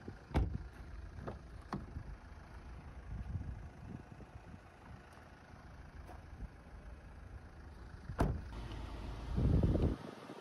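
Car door handles and latches clicking as the doors of a 2011 Hyundai Tucson are worked, a few light clicks in the first two seconds and a sharper clack about eight seconds in. A steady low rumble runs underneath and swells briefly just before the end.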